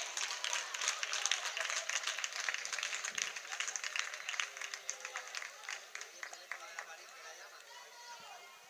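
A small crowd of spectators clapping, with voices calling out; the clapping thins out and fades over the last couple of seconds.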